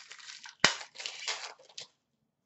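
The foil wrapper of an O-Pee-Chee Platinum hockey card pack being torn open and crinkled by hand, with one sharp snap a little over half a second in.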